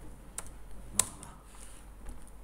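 Computer keyboard keystrokes: a few separate key presses, the loudest a sharp click about a second in, as a line break is typed into a text file.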